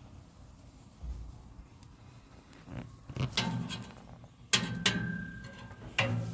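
A metal ladle working boiling water in a cast iron wok and pouring it over a hanging duck to scald and tighten its skin. It is quiet at first, then there are two short splashing clanks about three and four and a half seconds in, the second ending in a brief metallic ring.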